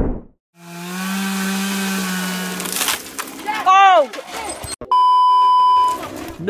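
A transition whoosh, then a chainsaw running steadily for about two seconds, a shout, and a one-second censor bleep near the end.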